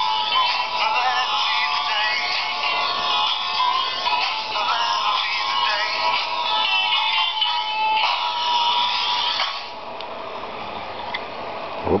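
A song played off a vinyl LP by a Tamco Soundwagon toy VW bus record player as it drives round the record, its small built-in speaker giving a thin, tinny sound with almost no bass. Near the end the music drops to a noticeably quieter level.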